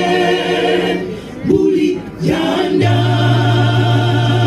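Mixed choir of men's and women's voices singing a cappella in harmony, holding long chords with two short breaks between phrases. A low bass note comes in and is held near the end.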